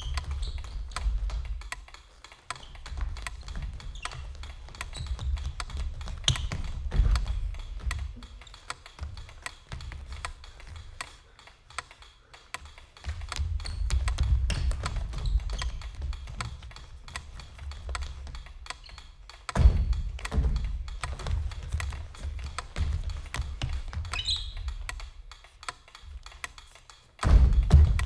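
Dancers' sneakers tapping, scuffing and thudding on a wooden stage floor, over a low rumble that swells and fades; a heavier thud comes about twenty seconds in.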